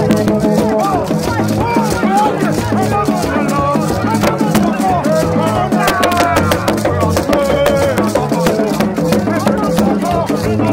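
A Gagá band playing: a crowd of voices singing a chant over fast shaken rattles and drums, with low tones from bamboo trumpets underneath.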